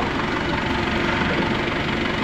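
Factory machinery running with a steady, constant drone and a faint hum.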